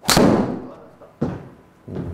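Crack of a TaylorMade SIM MAX titanium driver striking a golf ball off the mat, ringing briefly after impact, followed a little over a second later by a second, softer thump.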